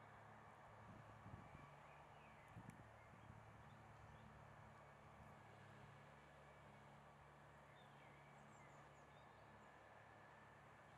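Near silence: faint outdoor background with a low steady hum and a few soft thuds about a second and nearly three seconds in. Faint high chirps come and go.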